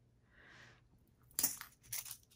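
Small handling sounds of fingers working at craft materials on a cutting mat: a faint soft rustle, then a sharp click about one and a half seconds in and a few lighter ticks near the end.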